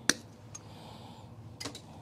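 Small clicks of handling electrical wires and pliers at an open outlet box: one sharp click just after the start, a fainter one about half a second in, and another couple near the end.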